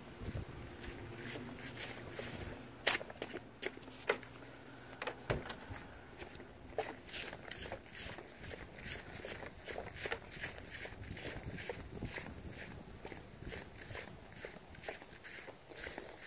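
Footsteps of a person walking over dirt and grass, a light, even tread of about two steps a second, with a few sharper clicks in the first half.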